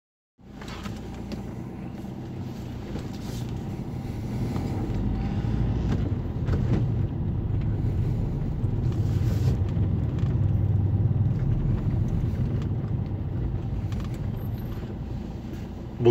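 Car driving slowly, heard from inside the cabin: a steady low rumble of engine and tyres on a paving-stone street, growing louder a few seconds in.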